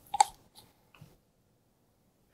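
A sharp plastic click with a short ring, then two faint taps about half a second apart, as a small plastic pour cup of epoxy is handled.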